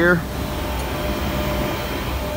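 Low-pressure dry nitrogen hissing steadily out of an A/C gauge hose as the line is purged of air, over a steady low hum of running service equipment.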